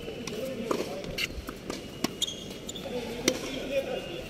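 Tennis ball hit by rackets and bouncing on a hard court during a rally: four or so sharp pops, irregularly spaced, the loudest near the end.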